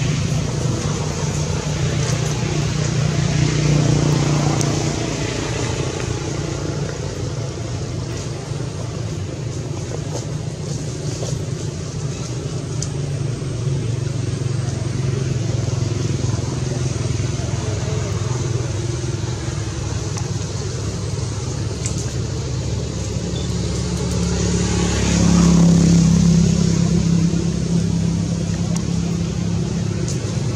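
Steady motor vehicle engine noise that swells louder twice, about four seconds in and again about 25 seconds in.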